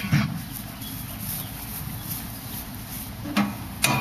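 A metal folding chair being handled and set down, giving a couple of sharp knocks near the end over a low rumbling background.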